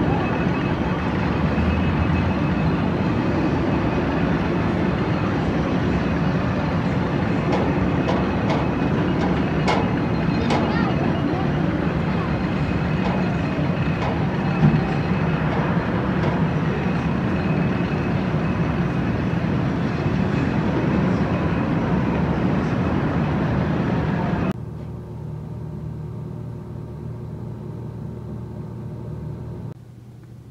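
Steady rushing outdoor noise with indistinct voices and a few faint clicks. About 24 seconds in it cuts off abruptly to a quieter steady hum.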